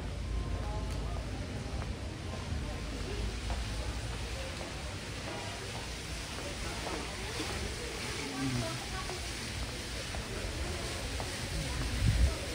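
Outdoor ambience of indistinct, faraway voices of people walking about, over a steady low rumble.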